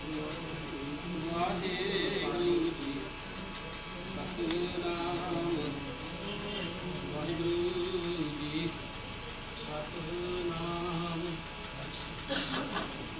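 A man chanting a prayer in long held notes that waver slightly, one phrase after another.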